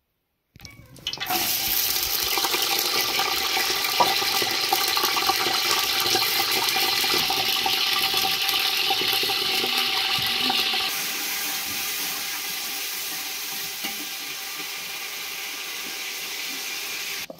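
Potato strips frying in oil in a metal pot over a wood fire: a loud, steady sizzle that starts about half a second in and eases a little about eleven seconds in.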